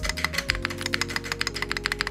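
Rapid keystrokes on a custom mechanical keyboard with Lavender linear switches in a carbon fibre plate, about a dozen clacks a second, over background music.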